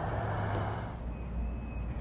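Low, steady rumble of road traffic in the distance, easing off about halfway through.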